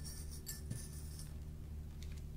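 Faint light clicks and rustles of folded fabric pieces and metal straight pins being handled in the first second, over a steady low hum.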